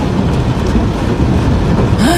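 Fast-moving floodwater torrent rushing past, a loud, steady, deep noise.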